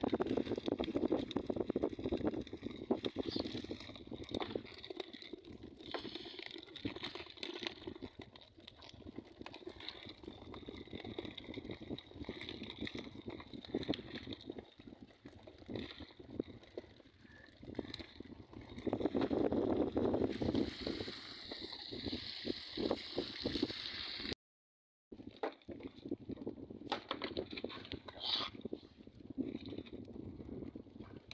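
Wet netting being shaken out and small fish flapping and slapping as a fish trap's catch is emptied into a plastic crate, with water splashing and dripping. The sound is irregular, with many short slaps, and cuts out for a moment about four-fifths of the way through.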